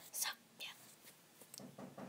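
A girl whispering softly close to the microphone in short hissy bursts.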